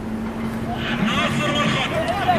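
Raised voices of players and onlookers shouting and calling on an outdoor football pitch, getting louder about a second in, over a steady low hum.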